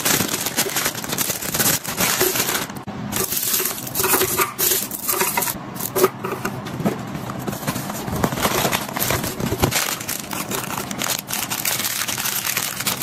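Crinkling plastic candy wrappers and packaging handled by hand, with small clicks as individually wrapped chocolates are dropped into a clear acrylic bin. The crackle is dense and continuous.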